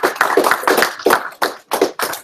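A small audience applauding, a dense patter of hand claps that thins out near the end.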